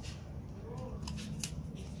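A few faint plastic clicks from a chalk holder and a stick of chalk being handled and fitted together.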